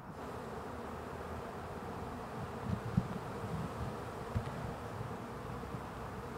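Many honeybees buzzing together in a steady hum, with a couple of soft low knocks about three seconds in and again near four and a half seconds.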